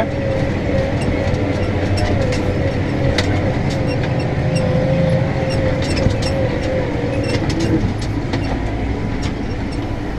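Case Maxxum 125 tractor running under load, heard inside the cab while it pulls a stubble cultivator: a steady engine rumble with a wavering whine over it and scattered rattles and clicks. The whine drops away and the engine eases off a little near the end.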